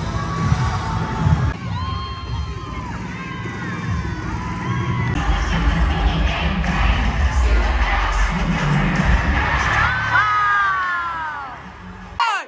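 Arena crowd cheering and screaming during a cheerleading routine, over loud routine music with heavy bass. High shrieks stand out about two seconds in and again near the end, the last ones falling in pitch.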